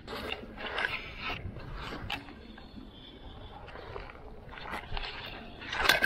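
Scattered light knocks, clicks and scrapes of gear being handled in a plastic kayak, with a slightly louder clatter near the end.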